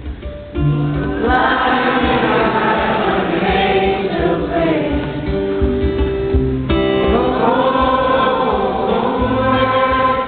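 A live crowd singing a song together in chorus, many voices blending, with guitar accompaniment.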